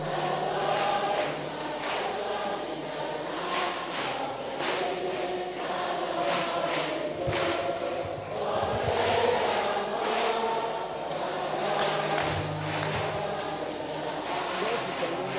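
A large congregation singing a gospel chorus together, many voices blended with no single lead voice standing out.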